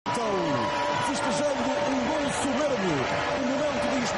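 A man's commentary voice over steady stadium crowd noise.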